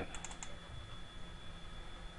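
A quick run of about four light computer-input clicks near the start, then a low steady hiss with a faint high whine.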